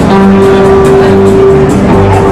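Live country band playing an instrumental passage, loud, with one note held for about a second and a half over a steady lower line.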